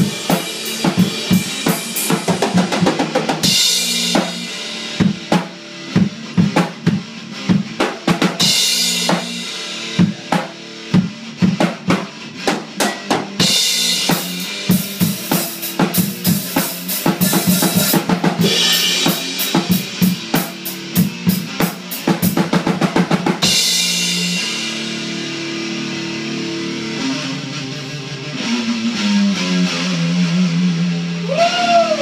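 Drum kit and electric guitar played together in a loose jam. About 23 seconds in, the drums stop and the guitar rings on alone with held notes.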